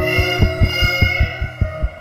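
Heartbeat sound thumping quickly and steadily under held musical tones, part of a song built on a heartbeat.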